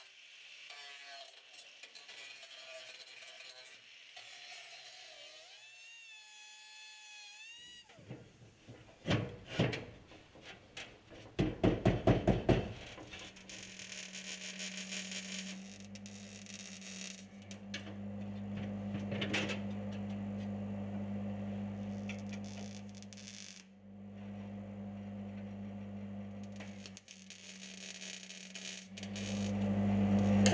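A run of hammer blows on steel, then an arc welder running in long stretches, its arc crackling over a steady electrical hum, with short breaks between welds.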